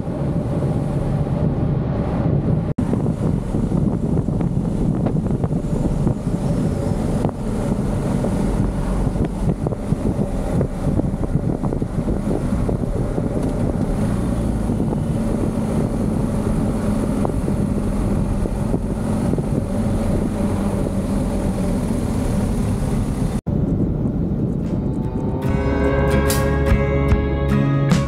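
BMW GS Adventure motorcycle under way: the engine runs steadily and wind rushes over the microphone, broken by two brief dropouts at edits. Guitar music comes in near the end.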